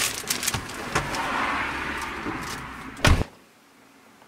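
Cellophane wrapping on a bunch of roses crinkling and rustling as it is handled, then a single heavy thump about three seconds in.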